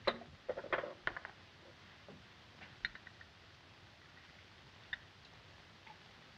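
A few faint, scattered clicks and clinks of glass and bottle as a drink is measured and poured at a bar. The clearest come at the very start, in a short cluster about a second in, and again near three and five seconds.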